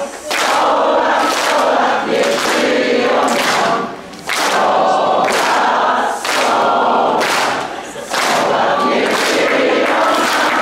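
Several voices singing together in chorus, with the audience clapping along.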